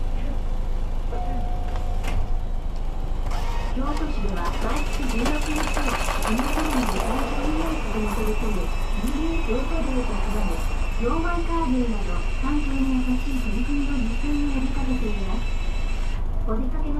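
Recorded announcement voice over a city bus's onboard speakers, over the steady low drone of the bus running. A faint steady high whine sits under the voice from about four seconds in.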